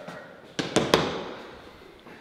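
A pool shot: the cue and billiard balls clacking, three sharp clacks in quick succession just over half a second in.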